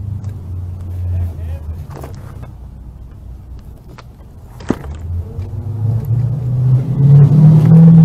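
Road traffic: a low engine rumble of passing cars that fades about halfway through and swells again toward the end, with one sharp click about halfway through.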